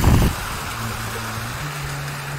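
Wind buffeting the microphone for a moment, then the steady hiss of water jets splashing from a stone water-wall fountain into its basin, with a faint low hum underneath that steps up in pitch about halfway through.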